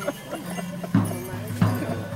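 Procession dance music: a drum beating sharp, regular knocks about three a second, starting about a second in, over a steady low hum.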